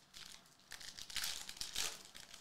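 Foil wrapper of a basketball trading-card pack being torn open and crinkled. A brief crinkle comes first, then a louder run of crackling tearing about a second long near the end.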